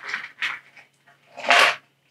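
Small clear plastic zip-lock bag of resin kit parts being handled, with a few faint rustles and one short crinkle about one and a half seconds in.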